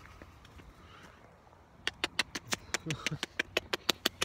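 Quiet outdoor background, then, about two seconds in, a fast, irregular run of sharp clicks and taps from a phone being handled and rubbed against the body.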